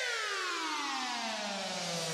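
An electronic tone sweeping smoothly and steadily down in pitch, one buzzy note falling from high to low as a transition sound effect.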